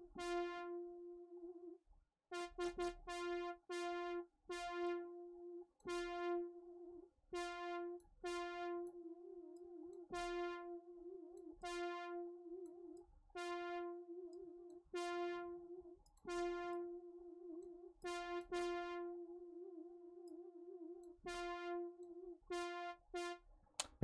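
A synth lead on Reason's Europa software synthesizer plays one note over and over, some notes short and some held. A fast, delayed vibrato from an LFO makes the pitch wobble toward the end of the held notes.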